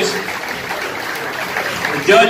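Audience applauding: a steady wash of many hands clapping.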